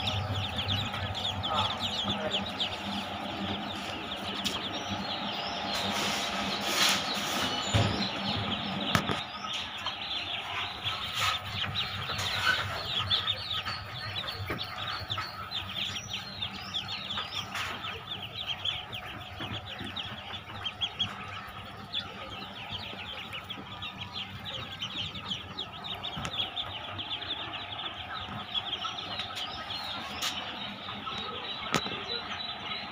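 A large crowded brood of young local pati ducklings peeping continuously in a dense chorus of short high chirps. A few sharp knocks come about six to nine seconds in.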